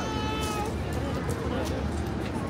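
A horse whinnying: a high call that has wavered and now holds a steady pitch before fading under a second in, over crowd chatter.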